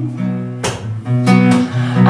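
Acoustic guitar strummed between sung lines: a few chords strummed about half a second apart over sustained bass notes.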